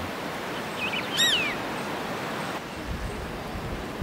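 Steady outdoor background noise in a mountain valley, with a single short bird call about a second in. A low rumble joins in during the last second or so.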